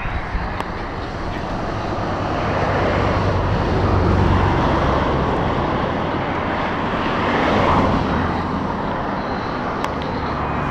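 Wind buffeting the camera microphone on a bridge: a loud, steady rushing rumble that swells twice.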